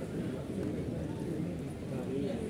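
Men's voices talking over one another in a close group, with some knocking or shuffling underneath.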